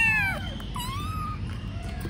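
Kittens meowing: one high meow that swells and falls away at the very start, then a shorter meow rising in pitch about a second in.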